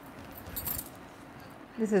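Bangles jingling briefly and cotton saree fabric rustling as the saree is unfolded and lifted, about half a second in.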